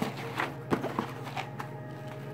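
A few soft taps and light knocks of cardboard cereal boxes being handled and set down side by side, over a faint steady hum.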